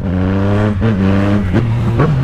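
Motorcycle engine running under way as the bike rides along, its note easing slightly and dipping briefly twice.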